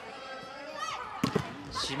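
Volleyball rally in an arena: steady crowd noise, with a couple of sharp smacks of the ball being hit a little past a second in.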